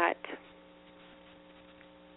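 Faint steady electrical hum made of a few fixed tones, left bare in a pause between words.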